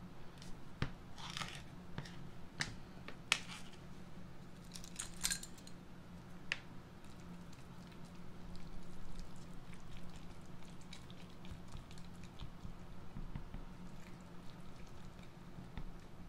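Handling noise from a new jar of black craft paste: sharp clicks and scrapes as its seal is peeled off and the jar is handled, then quieter scratching as the paste is stirred inside the jar, over a steady low hum.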